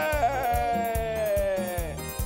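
One voice holding a long, drawn-out cry of praise, its pitch sliding slowly down and dropping away near the end, over music with a steady drum beat of about four strokes a second.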